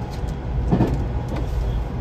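Running noise of a JR Central 383 series electric train heard inside the car: a steady low rumble of wheels on rail, with one brief louder knock about three-quarters of a second in.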